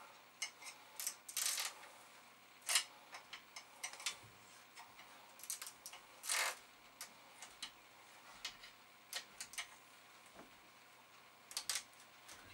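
Irregular small clicks and taps of hands handling chips and parts at an electronics workbench, with a few short scrapes, the longest about six seconds in.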